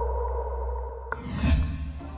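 Electronic intro sting. A deep synthesized drone and a held tone fade away. About a second in, a whoosh sweeps in and swells near the end.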